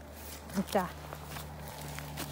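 Footsteps crunching and rustling through dry fallen leaves on a forest floor. A short vocal sound, rising and falling in pitch, comes just over half a second in, over a steady low hum.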